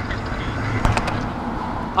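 Electric powerchair rolling over tarmac: a steady rumble of wheels and drive motors, with a couple of light clicks a little under a second in.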